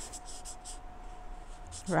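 Felt-tip highlighter rubbing over an eggshell in faint, scratchy strokes, with a thin steady hum underneath.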